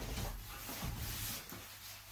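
Rubbing and rustling handling noise as a metal part is picked up and moved about, with a couple of soft low thumps.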